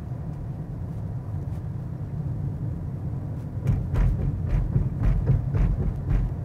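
Michelin Energy XM2+ tyres on a small car rolling at about 40 km/h with a steady low rumble. From a little past halfway comes a run of short thumps, about three a second, as the tyres cross thick raised painted road lines.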